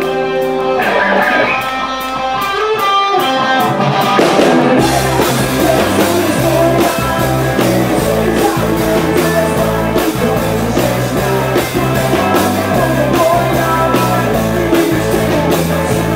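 Live rock band playing an instrumental passage: electric guitars ringing out over a held chord for the first few seconds, then drums and the full band come in about five seconds in and play on steadily.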